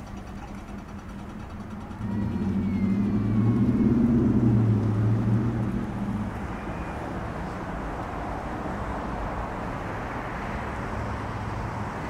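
City street traffic. A motor vehicle's low engine hum comes up suddenly about two seconds in, peaks and dies away by about six seconds. Then the tyre noise of a car builds steadily as it approaches and passes close by near the end.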